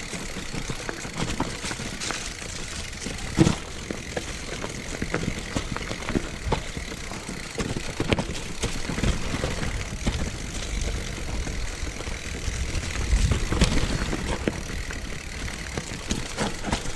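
Mountain bike rolling down a rough singletrack over dry leaves and dirt: steady tyre and trail noise with the bike clattering through many small knocks. A sharp knock comes about three and a half seconds in, and a heavier rumble around thirteen to fourteen seconds.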